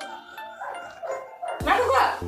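A Labrador barking, a short loud yelp near the end, over quiet background music.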